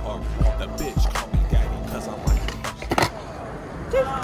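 Hip-hop beat with heavy bass hits, over a skateboard's wheels rolling on concrete, with a few sharp clacks.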